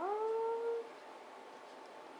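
A single animal cry that glides up in pitch, then holds steady and stops a little under a second in.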